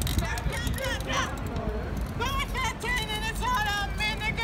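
Wordless high-pitched voices calling and whooping, their pitch sliding up and down, strongest in the second half, over a low steady rumble.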